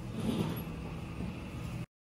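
Steady low mechanical hum of airport ambience heard from inside the terminal, with a brief swell about a third of a second in; the sound cuts off abruptly near the end.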